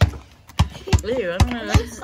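A small rubber basketball bouncing on a concrete driveway, five bounces a little more than two a second, with a child's voice over it.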